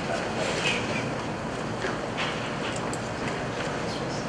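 Steady room noise, a constant hiss, with faint, distant talking off the microphone and a few light clicks.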